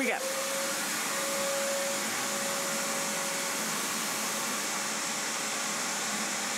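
Heavy-duty canister shop vacuum running steadily as its floor nozzle sucks sand out of a carpet, with a faint steady whine in the first few seconds.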